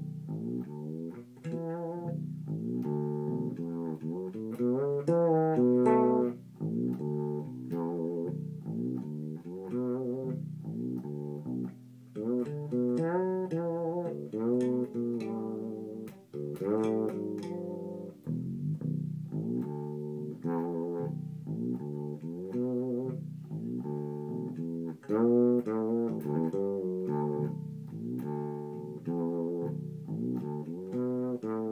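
Hudson six-string fretless electric bass played solo, a continuous melodic line running up and down the neck, with many notes sliding and wavering in pitch.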